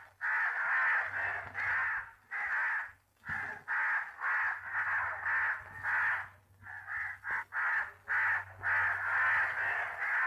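Crows cawing over and over in quick succession, about two harsh caws a second with brief pauses, over a faint steady low hum.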